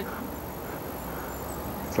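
Steady low outdoor background noise with no distinct event, and a faint brief high note about one and a half seconds in.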